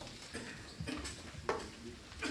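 Scattered light knocks and rustles of paper being handled, about five in two seconds, the sharpest about one and a half seconds in: the handling of ballot papers during the count of a vote.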